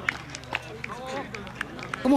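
Players' voices calling across an outdoor football pitch during play, with scattered short, sharp knocks.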